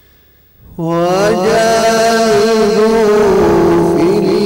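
After a quiet pause, a male qari's voice starts a long melodic phrase of Quran recitation a little under a second in, holding the note loudly with the pitch winding up and down in ornaments.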